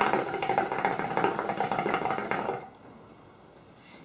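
Shisha (hookah) water bubbling steadily as a long pull is drawn through the hose, stopping after about two and a half seconds.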